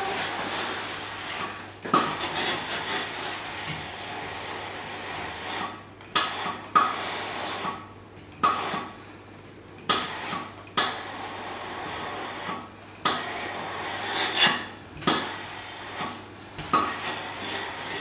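Steam-generator iron working over a cotton lab coat: a steady steam hiss broken by about ten short bursts, each sharp at the start and fading, every second or two, with light knocks as the iron is pushed and turned on the board. A steady low hum runs underneath.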